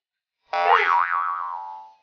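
A springy 'boing' sound effect, starting about half a second in. Its twangy tone wobbles in pitch and fades out over about a second and a half.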